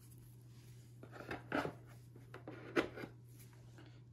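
A few light clicks and knocks of a plastic conical tube and its screw cap being handled as the tube is recapped, the sharpest about a second and a half in and again just before three seconds, over a faint low hum.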